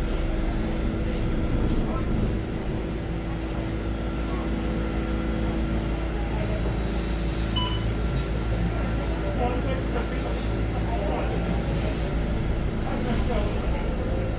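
Cabin noise inside an ST Engineering Linkker LM312 electric bus on the move: a steady low road rumble under a constant hum, with faint voices and one short beep a little past halfway.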